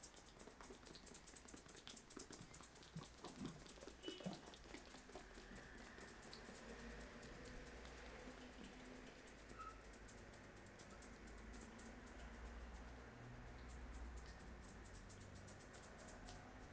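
Faint crackling rustle of fingertips rubbing and scratching through short hair on the scalp during a head massage, thickest at the start and again near the end.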